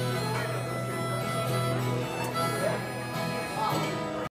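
Live acoustic guitar playing an instrumental passage with no singing, with long held notes sounding over it.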